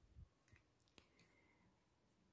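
Near silence with a few faint clicks of a plastic spoon against a glass mug while stirring a drink, a sharper click about a second in and a soft low thump near the start.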